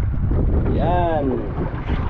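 Steady wind rumble on the microphone, with one short voiced word or call about a second in that rises and falls in pitch.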